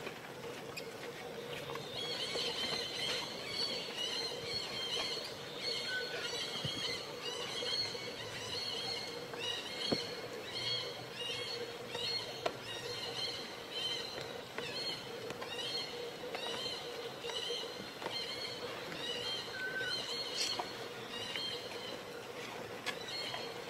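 Baby macaque screaming to call its mother: a long string of short, high-pitched calls, about two a second, starting about two seconds in, over a faint steady hum.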